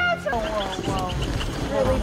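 A person's voice, with a quick run of short, evenly spaced high ticks, about seven a second, during the first second or so.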